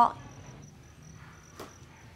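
Crickets chirping steadily and quietly in a high, pulsing trill, with one soft tap about one and a half seconds in.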